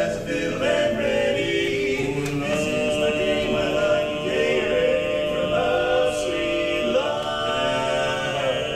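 A men's barbershop quartet singing a cappella in close four-part harmony, moving through held chords; a new long sustained chord starts about seven seconds in.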